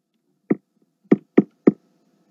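Four short, sharp taps close to the microphone: one, then three in quick succession, followed by a faint steady hum.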